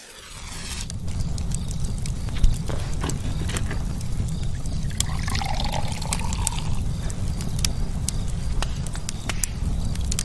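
Fire crackling over a steady low rumble, with liquid poured into a small glass from about five to seven seconds in.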